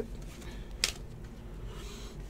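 Trading cards and a clear plastic card holder being handled: faint rubbing with one sharp click a little under a second in, over a steady low hum.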